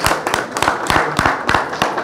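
A small group of people clapping their hands in a scattering of irregular, sharp claps.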